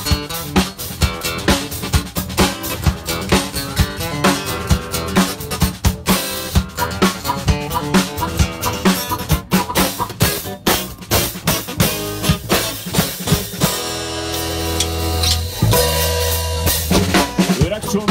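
Live band playing the instrumental opening of a song, led by a drum kit beating steadily with snare, rimshots and bass drum under pitched instruments. About fourteen seconds in, held low chords come in under the drums.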